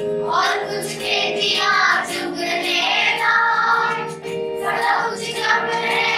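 A group of schoolchildren singing a Kashmiri folk song together in sustained phrases.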